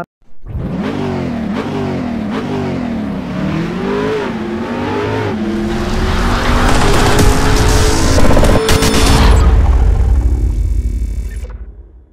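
Engine revving: its pitch climbs and drops again and again for about five seconds, then it runs louder and steadier at high revs before fading out near the end.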